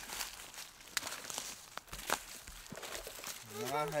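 Footsteps rustling and crunching through dry fallen leaves, with a few sharp light clicks and knocks among them.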